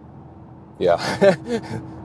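Steady road and engine hum inside the cabin of a Mercedes-AMG C43 cruising on the motorway, with a faint constant drone. About a second in, a man says "yeah" and laughs over it.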